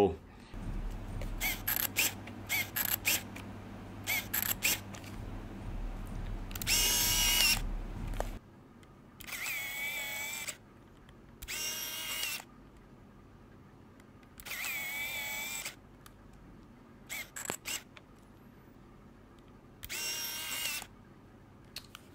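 Leica Minilux compact film camera being worked close to the microphone: a run of small sharp mechanical clicks, then five short whirs of its built-in motor, each under a second, spaced a few seconds apart.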